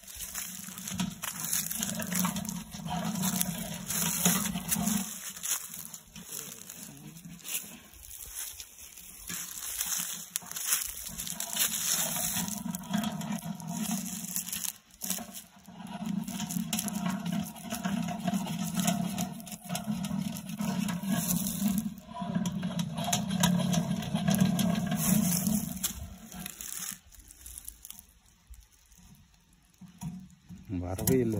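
Hand-cranked stainless steel honey extractor being spun to fling honey out of the comb frames. The geared crank and the mesh baskets run with a steady low hum in several spells of a few seconds each, dying away near the end.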